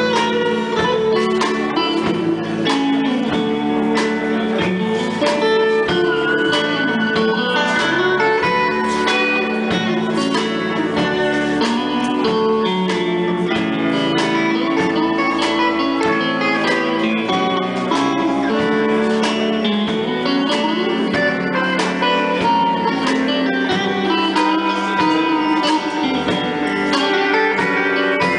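Small country band playing an instrumental passage: electric guitar, pedal steel guitar, bass and drums, with a steady beat throughout.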